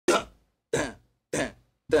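A sampled voice chopped to a short spoken fragment and fired four times in a row, about every 0.6 s, each hit sharp at the start and quickly fading: a stutter edit of an interview sample in a sample-based remix.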